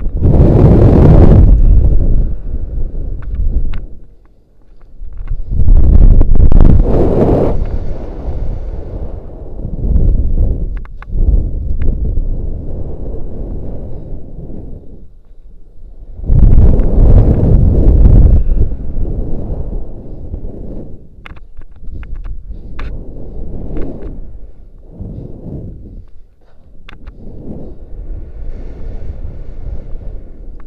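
Wind rushing over a helmet-mounted camera's microphone during a rope jump's fall and swings. It comes in loud surges about a second in, around six seconds and around seventeen seconds, and dies down between them.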